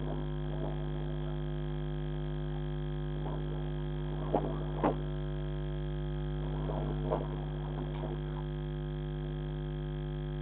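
Steady electrical hum made of a stack of buzzing tones, as picked up by a security camera's microphone. Faint irregular sounds rise and fall behind it, and two short sharp knocks come about four and a half and five seconds in.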